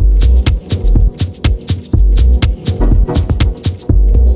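Dub techno from a DJ mix: a deep bass pulsing in a steady beat, with regular high ticks over a held, droning chord.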